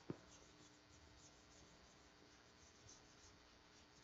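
Faint wiping of a chalkboard with a board eraser: a run of short, soft strokes several times a second, with one small knock just after the start.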